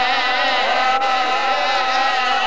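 Men chanting a long sung line in devotional majlis style, with held notes that waver in pitch.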